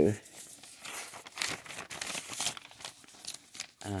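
Soft, irregular crinkling and rustling noise filling the pause in her talk.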